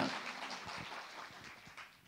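A man's amplified voice breaks off and its echo dies away in the hall, leaving faint room hiss with a few soft ticks.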